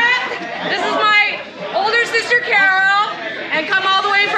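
Several voices talking over one another close by, with more chatter behind, and one voice held a little longer about two and a half seconds in.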